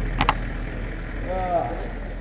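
Two sharp clicks close together just after the start, then a short voice sound about halfway through, over a steady low rumble.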